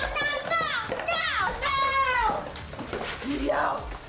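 A woman screaming and wailing in a tantrum: a run of high-pitched cries, several of them long and falling in pitch.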